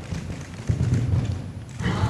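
A horse cantering, its hooves thudding dully on sand arena footing.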